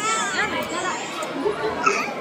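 Several people's voices talking over one another in lively chatter, some of them high-pitched.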